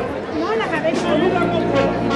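Crowd chatter: several people talking at once, with no band playing.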